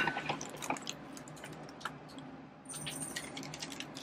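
Faint crinkling and rustling of a paper sandwich wrapper being handled, heard as scattered small clicks and crackles.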